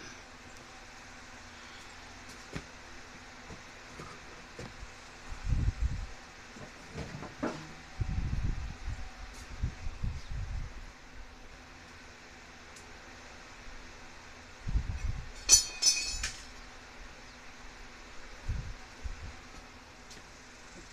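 Scattered dull thumps and knocks from work on a ladder and garage door hardware, with one short, bright metallic clink about three-quarters of the way through.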